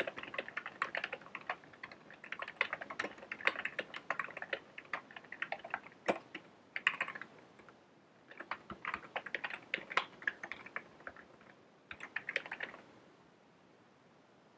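Typing on a computer keyboard: runs of rapid keystrokes broken by short pauses, stopping shortly before the end.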